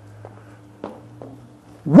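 Two faint footsteps of a man walking on a stage floor, over a steady low hum.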